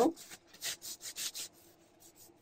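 Brisk rubbing against skin, a quick run of short hissy strokes that fade out near the end, from swatches being wiped off the hand hard enough to sting.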